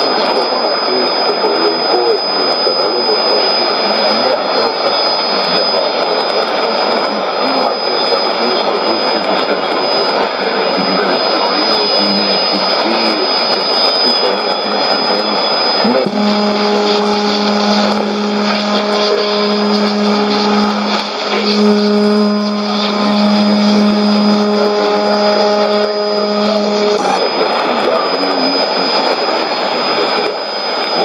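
Shortwave AM reception of Voice of Greece on 9420 kHz through a Sony ICF-2001D: a weak programme buried in heavy static hiss, with a steady high whistle over it for the first half. About halfway through, a low droning tone with overtones comes in and holds for about eleven seconds, breaking off briefly a few times.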